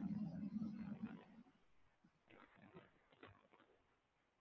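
A person's low, drawn-out hum, fading out about a second and a half in, followed by a few faint soft clicks.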